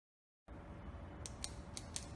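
Intro sound effect that begins about half a second in: a low hum with a run of sharp, crisp clicks, about four a second, starting a little past one second.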